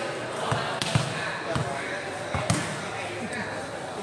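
A volleyball being struck and bouncing, three sharp hits within a few seconds, over the chatter of onlookers' voices.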